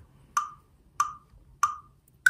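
RhythmBot's electronic metronome click counting in before the rhythm plays: three evenly spaced clicks about 0.6 s apart, each with a short pitched ring.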